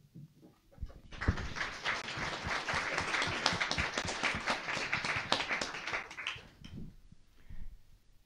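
Audience applauding: the applause starts about a second in and dies away near the end.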